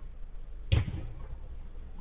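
A football struck once: a single sharp thud about 0.7 seconds in, over a steady low rumble.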